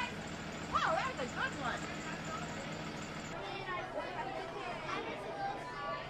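A school bus engine idling with a steady low hum under a few voices. About three seconds in it cuts off suddenly and gives way to the babble of many children and adults chattering in a large, echoing cafeteria.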